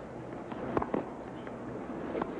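Tennis rally on a hard court: two sharp knocks of the ball, off a racket and off the court, about a fifth of a second apart, over a steady stadium background.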